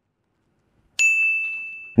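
Dead silence, then about a second in a single high, bell-like ding sound effect that rings on and fades.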